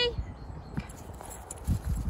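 A few dull thumps and footsteps on grass as a tennis ball is kicked and a small dog runs after it, with a quick cluster of thumps near the end.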